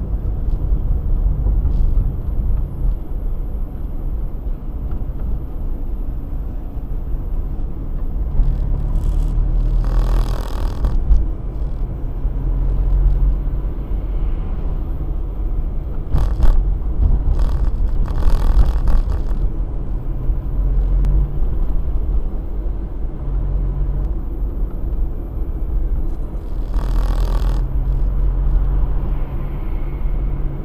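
Car cabin noise while driving: a steady low rumble of engine and road, with a faint engine hum. Several brief louder washes of noise come about ten seconds in, again around sixteen to nineteen seconds, and near twenty-seven seconds.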